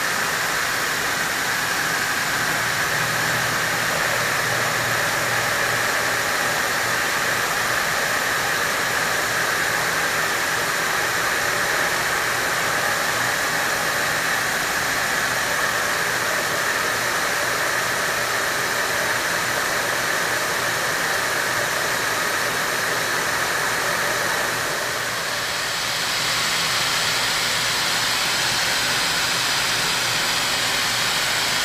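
Milling machine spindle running as an end mill cuts a keyway in a motor shaft, under the steady hiss of an air mist coolant sprayer and a low motor hum. About 25 seconds in the hiss dips briefly and comes back brighter.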